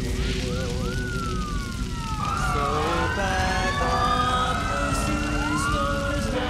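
Several emergency-vehicle sirens wailing, their pitches sweeping up and down and overlapping, over a heavy low rumble. One siren starts just after the beginning, and more join about two seconds in.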